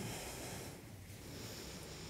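A woman breathing slowly and softly close to a headset microphone: two breaths of airy hiss, one at the start and one near the end.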